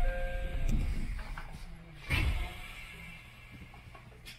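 An electronic chime of steady held tones rings out and stops under a second in, over heavy low thumps. A second thump comes about two seconds in, then a low steady hum fades away.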